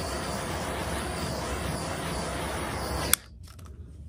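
Handheld gas torch flame hissing steadily as it is played over fresh epoxy resin to pop surface bubbles. It cuts off suddenly with a click about three seconds in.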